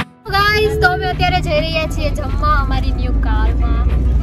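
High women's voices singing inside a moving car, starting about a quarter second in, with long sliding notes over the steady low rumble of the car cabin.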